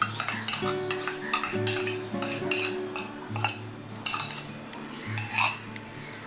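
A metal spoon scraping and clinking against stainless steel bowls while spooning a white marinade over raw chicken pieces. It is a quick, irregular run of scrapes and taps that thins out near the end.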